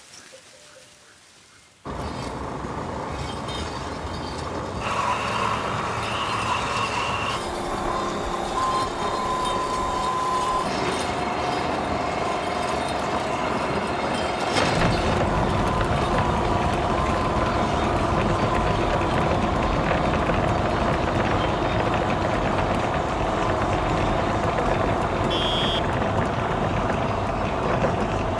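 Train running along the rails, a steady loud rumble with held squealing tones, starting suddenly about two seconds in and growing heavier in the low end from about halfway. A short pulsing high tone sounds near the end.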